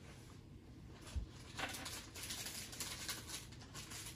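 Quiet room tone with a soft knock about a second in, then a run of faint light taps and rustles from a hand working a handheld tablet-style scan tool's touchscreen.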